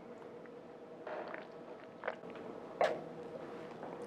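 Faint mouth sounds of a person sipping and swishing red wine during a tasting, with a few soft handling noises and a brief click near the end.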